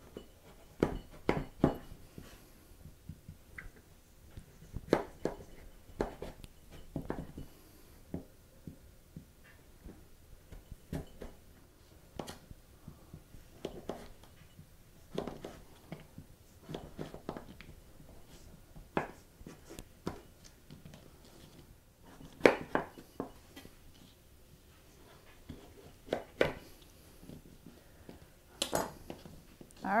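Chef's knife cutting raw butternut squash into chunks on a plastic cutting board: irregular knocks as the blade goes through the firm flesh and meets the board, some in quick runs of two or three.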